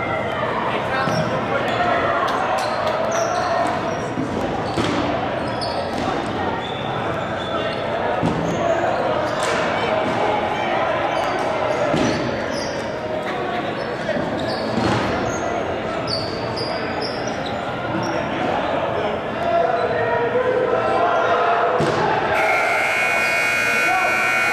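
Players shouting and calling across an echoing gym, with dodgeballs bouncing and smacking on the hardwood floor now and then. About two seconds before the end a buzzer comes on and holds.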